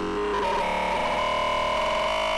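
DJ-mixed electronic dance music in a breakdown: held synthesizer chords with no beat, moving to a new chord about half a second in.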